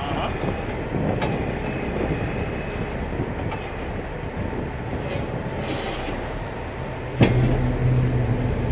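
Tow truck engine running steadily, with a few light metallic clinks. About seven seconds in there is a sharp knock, then a louder steady hum sets in.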